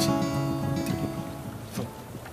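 Acoustic guitar music fading out, its last chord ringing away with a few soft plucked notes.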